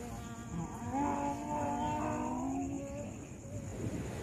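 A long, drawn-out vocal call at a steady pitch, held for about two seconds and then trailing off.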